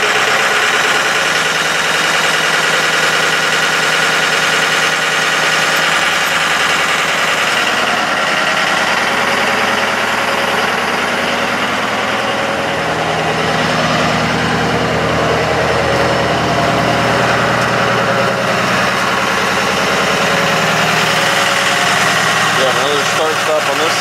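Ford F-550 truck engine idling with the PTO engaged, driving the Altec boom's hydraulic pump while the outrigger is lowered: a steady mechanical drone with a high whine over it. A deeper hum swells in the middle stretch and then settles.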